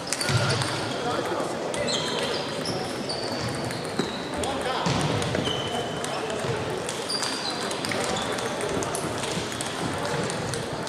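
Table tennis balls clicking off bats and tables at many tables at once in a large hall, a dense irregular patter of clicks, with short high squeaks now and then and a steady murmur of voices underneath.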